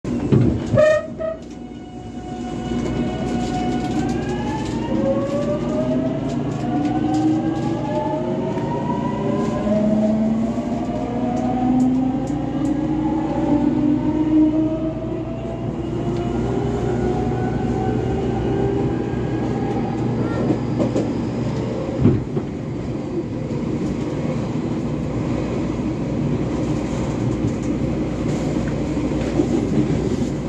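JR Kyushu 813 series electric train accelerating, heard from inside the passenger car. The inverter-driven traction motors whine, first holding and stepping in pitch, then several tones glide upward together for about twelve seconds before fading. Under it is steady running rumble of wheels on rail, with a single sharp clack about two-thirds of the way through.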